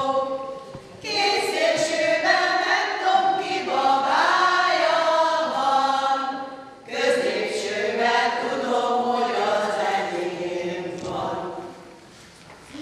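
A group of older women singing together unaccompanied, in long held phrases with two short breaks for breath, about a second in and a little past the middle.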